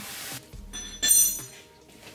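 A short rustle of plastic wrapping, then about a second in a single bright chime-like clink that rings briefly and fades.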